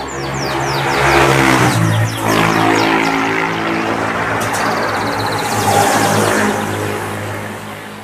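A motor vehicle's engine running close by, a steady drone that swells over the first second and eases a little near the end, with birds chirping briefly at the start.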